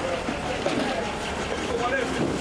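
People's voices talking nearby over a steady low motor hum.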